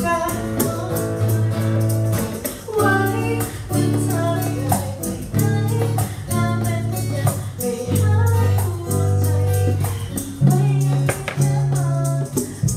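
Acoustic pop song performed live: a woman singing to strummed acoustic guitar, with hand percussion keeping a steady beat.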